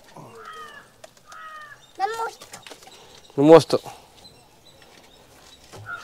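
A few short bursts of speech, loudest about three and a half seconds in, with two brief higher-pitched calls in the first two seconds and quiet gaps between them.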